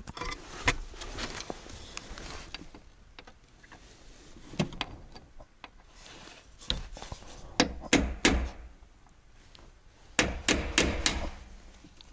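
Hammer striking a punch against the steel steering column and wheel hub of a Trabant 601, trying to drive out the notched taper pin that holds the steering wheel. Sharp knocks in irregular groups: a few at the start, a run of three near the middle and four quick ones near the end.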